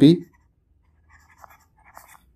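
Faint scratching and tapping of a stylus writing on a tablet screen, in short strokes clustered from about a second in to the end. A voice finishes a word at the very start.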